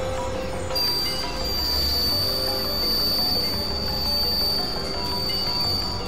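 Experimental synthesizer drone music: a low rumbling bed with scattered short tones, joined about a second in by a high, steady whine that holds on.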